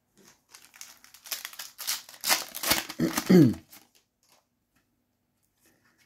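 Foil wrapper of a Panini FIFA 365 trading-card packet being crinkled and torn open, with the rustling loudest two to three seconds in.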